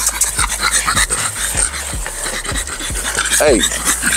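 French bulldogs panting with mouths open, a run of quick, uneven breaths. A man calls "hey" near the end.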